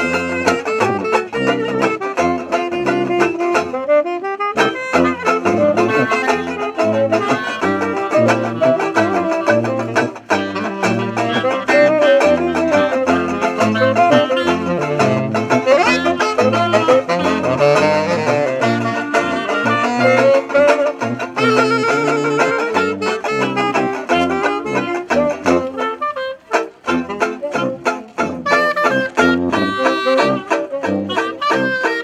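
A small traditional jazz band playing: tenor saxophone, clarinet, banjo and sousaphone together, the sousaphone stepping out the bass line under the horns.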